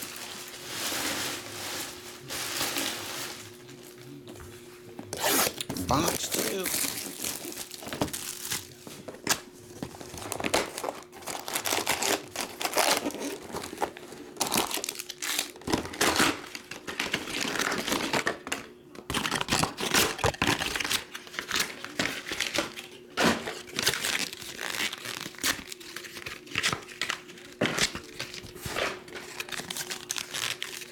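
Crinkling and tearing of plastic film and foil trading-card packs being handled: irregular crackles throughout as a hobby box is unwrapped and its foil packs taken out and stacked.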